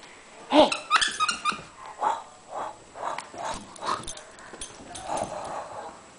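A Brussels Griffon dog making short vocal sounds as it plays: a quick run of them about a second in, then more scattered over the next few seconds.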